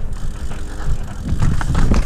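Mountain bike descending a rocky dirt trail: tyres rumbling over dirt and rock slabs, with frequent knocks and rattles from the bike. It gets rougher and louder about one and a half seconds in.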